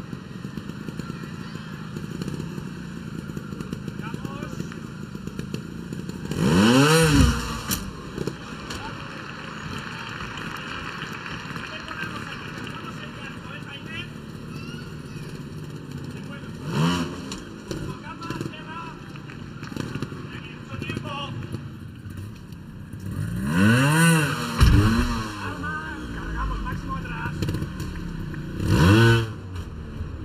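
A trials motorcycle's engine blipping the throttle in short revs, each rising and falling in pitch, four times, with a steady low background hum between the revs.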